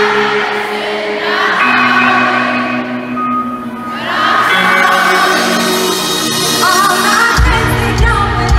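Large men's chorus singing long held chords that change every second or two, with the arena crowd cheering over it. A deep bass comes in just before the end.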